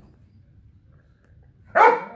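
A Doberman barks once, a single loud bark near the end.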